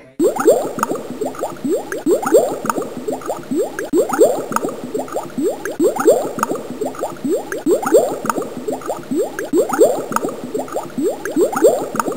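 Water bubbling: a steady stream of short rising bubble blips, several a second.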